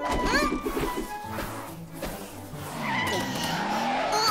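Cartoon sound effects of a small car speeding off and skidding, with engine revs and pitch glides, over background music.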